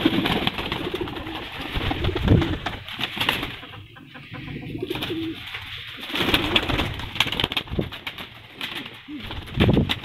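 Pigeons cooing, with a clatter of wing flaps and rustling as the birds are chased and handled.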